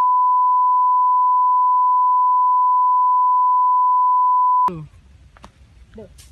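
A steady 1 kHz sine test tone, the reference tone that goes with colour bars, held for nearly five seconds before cutting off abruptly. Faint background noise with a few light clicks follows.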